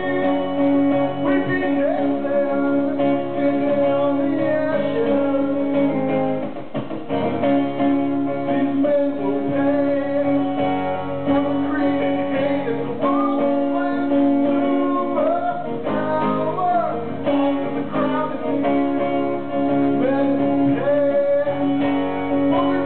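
A man singing into a microphone over his own strummed acoustic guitar, a solo live song performance.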